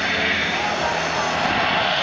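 Steady open-air background noise with people talking under it, continuous and without sudden sounds.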